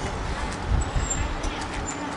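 Street traffic: a low rumble of passing vehicles over steady background noise, swelling slightly about a second in.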